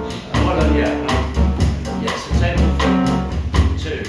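Live jazz band playing: plucked double bass notes under a steady cymbal beat from the drum kit, with piano and saxophone.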